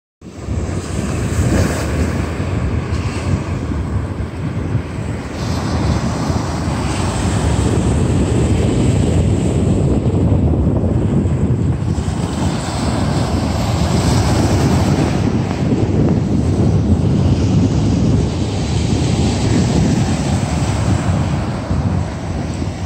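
Steady ocean surf washing over a rocky reef shelf, mixed with wind buffeting the microphone as a loud, uneven low rumble.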